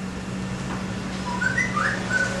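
A few short, high whistle-like chirps at different pitches in the second half, one of them a quick upward slide, over a steady low hum.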